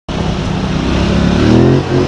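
ATV engine running under steady throttle as the quad rides a dirt trail, its pitch rising slightly about halfway through as it picks up speed, over a steady rush of wind noise.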